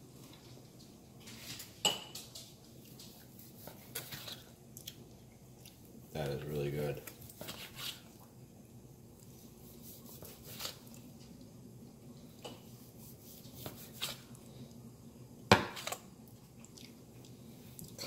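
A long slicing knife cutting through smoked brisket on a plastic cutting board, with scattered clicks and knocks as the blade meets the board; the loudest, sharpest knock comes about three-quarters of the way through.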